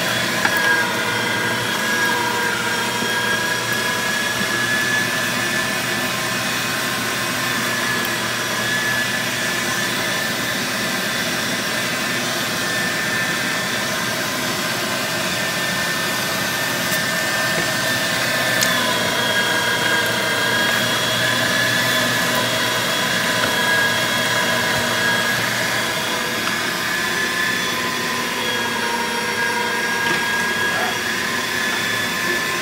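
Electric meat grinder running steadily as goose meat is fed through it: a constant motor whine made of several steady tones. About two-thirds of the way through there is a click and the pitch drops a little.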